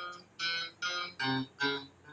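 Clean electric guitar, about five single notes picked one at a time, a little over two a second, hunting by ear for notes that sound good over a C–F–G chord progression.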